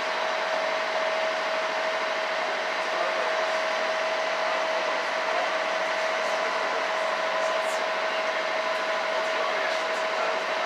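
A cruise boat's engine running steadily while underway, heard from on board: an even drone with a constant hum.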